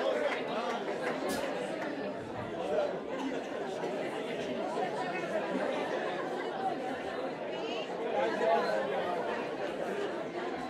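Audience chatter in a club: many voices talking at once in a steady, reverberant hubbub, with no music playing.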